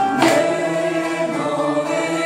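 Kanun plucked with finger picks, playing the melody of a peşrev in makam Sûzidil, with a group of voices holding and singing along with the notes.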